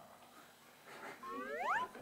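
Comic sound effect added in editing: a single rising, whistle-like glide lasting under a second, climbing steeply in pitch just before the end.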